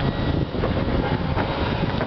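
Wind buffeting the microphone at height, a loud uneven rumble that rises and falls.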